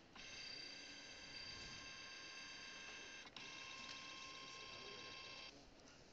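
Epson 3170 Photo flatbed scanner running a preview scan: a faint, steady multi-pitched whine from the moving scan head's motor. About three seconds in it stops briefly with a click, then resumes at a slightly different pitch and stops a little before the end.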